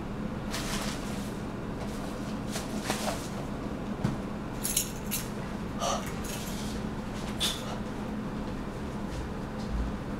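A lipstick tube and its cap being handled: a few scattered light clicks and brief scrapes of plastic and metal under the fingers, over a steady low hum.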